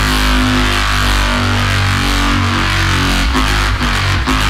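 Electronic dubstep track in a section carried by sustained, heavy synth bass notes that shift pitch a few times, with the drums coming back in near the end.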